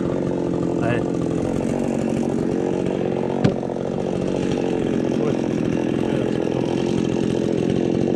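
A chainsaw engine running steadily without cutting, with a single sharp knock about three and a half seconds in.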